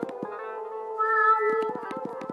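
Crystal Synth app on an iPad played by touch: held synth tones that bend in pitch in the middle, with quick runs of short notes at the start and again near the end.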